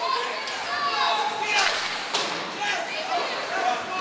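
Ice hockey game sounds in a rink: several voices calling and chattering at once, with a few sharp knocks from play on the ice.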